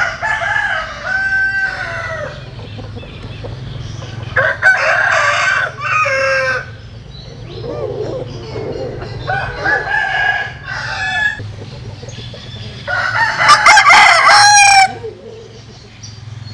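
Roosters crowing: four crows a few seconds apart, each about two seconds long, the last one the loudest.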